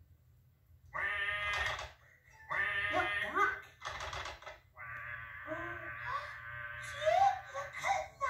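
High-pitched puppet voices giggling and chattering in wordless gibberish, in short bursts from about a second in and a longer run in the second half, heard through a television speaker in a small room.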